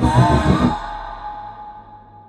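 A woman's breathy, rapturous sigh over low pulsing trailer music. The music stops within the first second, leaving one held tone that slowly fades away.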